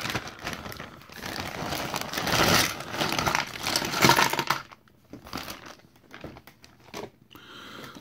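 A clear plastic zip-lock bag crinkling as it is handled and tipped out, with a loud burst about four seconds in as a load of small hard-plastic toy accessories spills onto the pile. After that come scattered light clicks of the plastic pieces being picked through.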